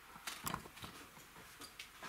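A few faint knocks and clinks of a ladle and vessels against metal pots of water, the loudest about half a second in.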